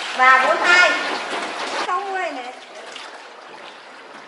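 Voices speaking briefly twice in the first half, then quieter water sloshing and trickling around a hand-rowed boat.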